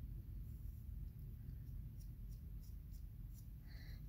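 Faint scratchy strokes of an eyebrow brush being combed through the brows, a few soft ticks over a low steady rumble.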